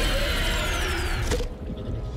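A movie monster's screech, a film sound effect that slides down in pitch and cuts off abruptly about a second and a half in. Quieter sustained tones follow.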